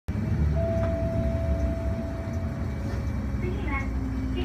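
City bus engine running with a steady low rumble, heard from the driver's area while the bus drives. A steady electronic-sounding tone sounds for about two seconds in the first half.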